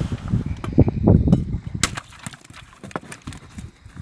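Dull thumps and knocks against the wooden boat, heavy in the first two seconds and then a few sharp clicks, as a caught caiman is held down with a snare pole on the boat floor.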